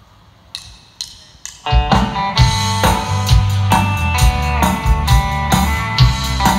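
A country band starts playing live: acoustic and electric guitars, bass guitar and drum kit come in together with a steady beat, after three evenly spaced clicks that count the song in.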